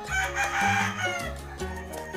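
A gamefowl rooster crows once, a single call of a little over a second near the start. Background music with a steady beat plays under it.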